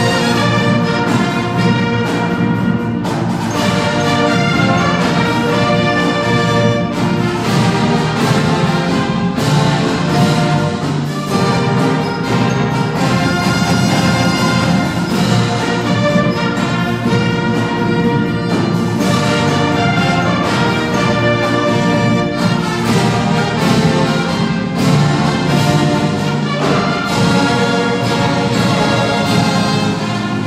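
A fanfare corps playing live: trumpets, trombones and sousaphones carrying a brass piece over the beat of marching snare drums.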